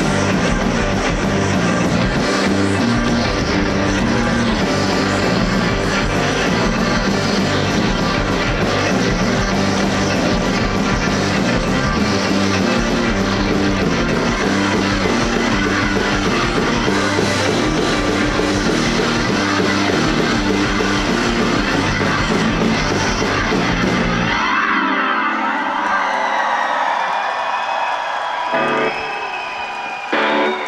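Live rock band playing loud, with electric guitars, bass and drums, and no singing. About 25 seconds in the bass and drums cut out as the song ends, leaving only thinner, higher sounds ringing on.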